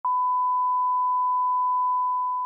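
Steady 1 kHz line-up test tone that goes with SMPTE colour bars: one unbroken pure beep that starts abruptly at the very beginning.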